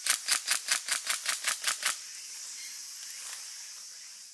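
An airsoft gun fires a quick string of about ten shots, some six a second, in the first two seconds. Under the shots runs a steady high drone of summer insects.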